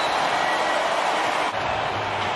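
Steady crowd noise in a basketball arena whose stands are mostly empty, so it is piped in through the arena sound system. It has an even, unbroken roar with no single shouts. About one and a half seconds in the video cuts, and a low steady hum joins the crowd bed.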